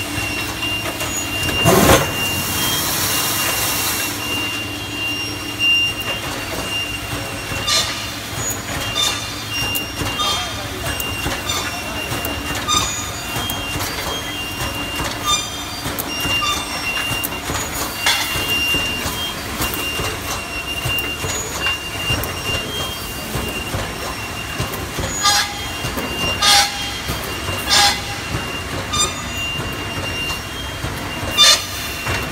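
Welded wire mesh machine running: a steady machine noise with a high whine, punctuated by sharp knocks every one to three seconds as the welding head fires and the mesh is advanced. A loud burst of hiss comes about two seconds in.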